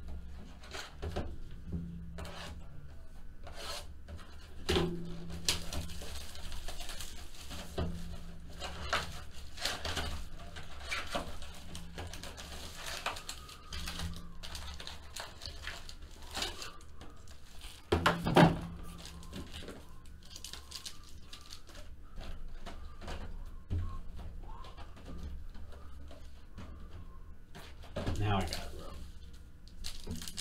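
Box cutter slitting the plastic wrap on a hobby box of football cards, then cardboard and plastic wrapper rubbing and tearing as the box is opened, with scattered clicks and taps. One louder knock comes about eighteen seconds in.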